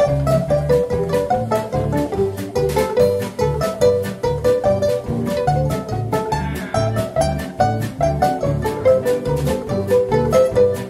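Western swing band playing an upbeat polka instrumental: fiddle and steel guitar over upright bass and electric guitars, with a steady bouncing beat.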